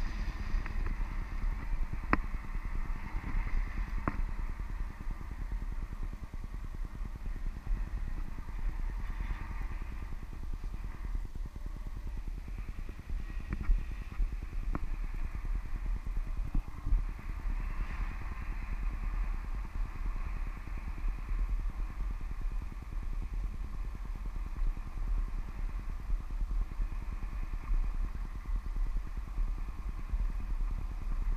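Wind rushing and buffeting over a handheld action camera's microphone in paraglider flight: a steady low rumble with a few sharp knocks in the first half.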